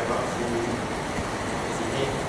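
Steady background room noise, a constant even hiss and hum, with a faint voice briefly at the start.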